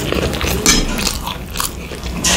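Close-miked chewing of food, with irregular sharp mouth smacks and crunches, the clearest about a third of the way in and again past the middle.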